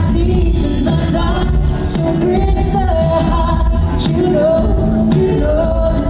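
Live concert music: a female singer holding long sung notes over a full band with electric bass and a heavy low end.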